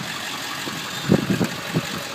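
Ford 7.3 L Powerstroke V8 turbo-diesel idling steadily. About a second in, a quick run of sharp clicks and knocks comes as the door latch is pulled and the cab door swings open.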